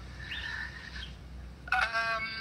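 Birds chirping faintly over a low steady background hum, picked up on a video call's microphone outdoors. Near the end a man's voice starts up loudly.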